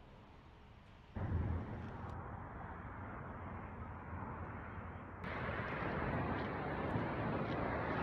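Wind buffeting a phone microphone outdoors, a rumbling hiss with no clear tone. It starts abruptly about a second in and gets louder about five seconds in.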